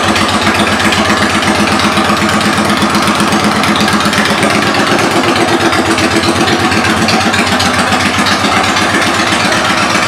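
A 2002 Yamaha V Star 1100's air-cooled V-twin idling steadily through aftermarket exhaust pipes, with an even, regular beat of firing pulses.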